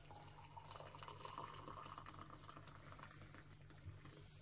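Water poured from an electric kettle into a mug with a tea bag, a faint steady stream whose pitch rises a little as the mug fills.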